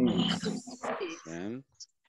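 Indistinct speech over a video call, ending in a drawn-out low vowel about a second and a half in, then a brief silence.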